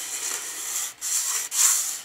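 Nail point of a wooden scribing stick scratching across sheet steel in three back-and-forth strokes, the last the loudest, scoring a scribe line into the metal.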